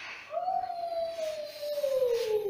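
A toddler's long, drawn-out vocal note: one sustained 'ooh' that starts about a third of a second in and slowly falls in pitch.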